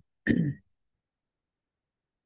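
A person clearing their throat once, briefly, over a video-call line.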